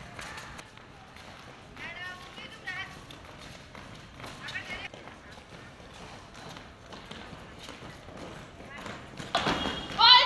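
Many feet stepping and shuffling on paving stones, a steady patter of small scuffs and taps. Brief children's voices come through a few times, and a louder voice starts near the end.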